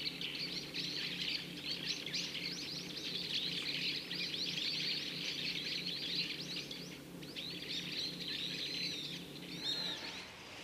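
Many small birds chirping densely and overlapping, with a short lull about seven seconds in. A steady low hum runs underneath.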